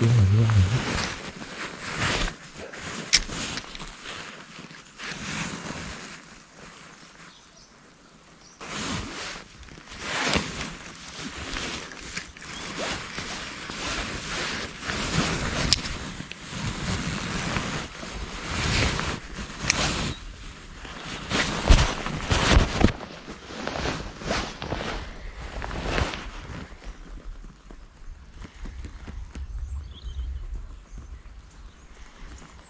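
Irregular rustling, brushing and scraping of a jacket sleeve and hands handling a spinning rod close to a body-worn camera's microphone, with a few sharper clicks and knocks. It eases off for a couple of seconds, then picks up again.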